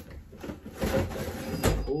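Rummaging and handling of tools and objects on a workbench, with one sharp knock near the end.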